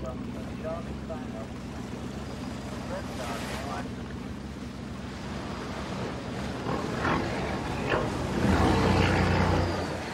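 Motor boat engine running steadily at low speed with water lapping against the hull, swelling louder for about a second near the end.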